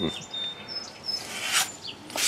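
A bird chirping faintly in the background: thin, high whistled notes, one early and a higher one about a second in. A brief soft hiss follows shortly after.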